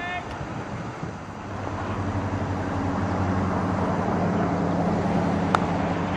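A low, steady engine drone, like a motor vehicle nearby, builds up and holds. Near the end comes a single sharp crack of a cricket bat striking the ball.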